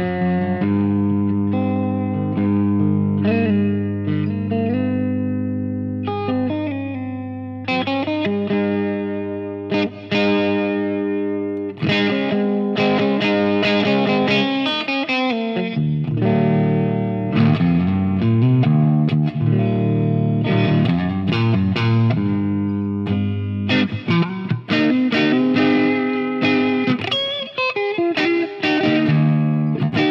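Charvel Super Stock SC1 electric guitar played through an amplifier with overdrive. It mixes held, ringing chords and low notes with single-note lines, string bends and quick picked passages.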